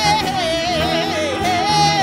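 Gospel praise singing: a woman's high voice through a microphone and PA, bending through quick melismatic runs over steady held chords from the accompaniment.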